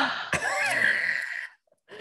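A person's breathy, gasping laugh heard over a video call, lasting about a second and a half and cutting off suddenly.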